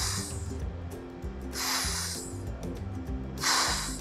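A woman's voice making the /f/ phoneme, a drawn-out breathy hiss 'fff', three times with pauses of about a second between, over soft background music.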